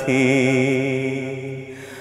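A man singing a Bengali Islamic song (gojol), holding one long note that fades away over a second and a half.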